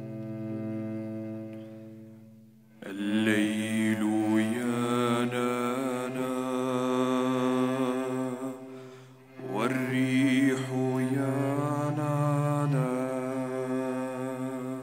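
A cello holds a low note that fades, then about three seconds in voices enter singing slow, long-held chant-like phrases over the cello's low drone. There is a short breath break near the ninth second before the second phrase.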